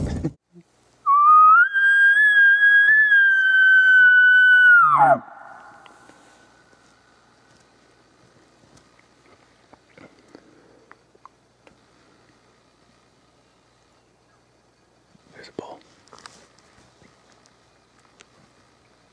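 An elk bugle call blown by a hunter as a locate bugle, to get a bull to answer: one high whistling note about four seconds long that starts about a second in, rises, holds, then drops steeply into a low grunt.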